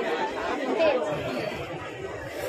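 Chatter of several people talking at once, with one voice standing out briefly near the middle.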